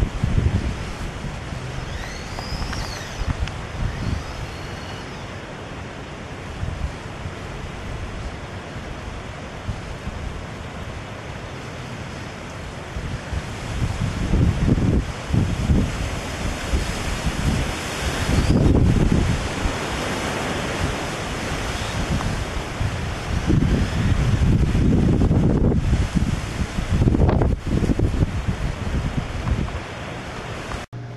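Wind buffeting the microphone: a steady rushing hiss with irregular low rumbling gusts, stronger and more frequent in the second half.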